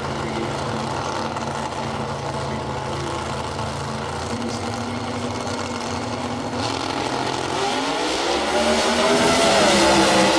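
Two drag-racing cars' engines running at the starting line, then revving up with rising pitch and getting much louder about eight seconds in as they launch down the strip.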